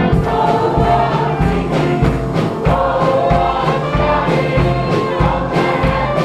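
Church choir singing a gospel song, with instruments keeping a steady beat underneath.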